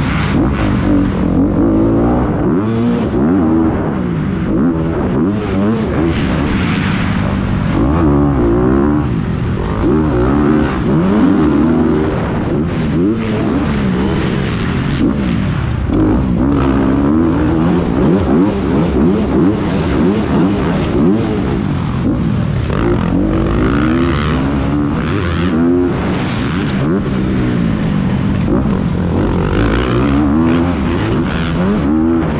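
Motocross dirt bike engine heard close up from the rider's helmet, revving up and dropping off again and again as the bike races around a dirt track.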